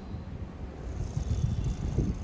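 Low, uneven outdoor rumble with no clear single event.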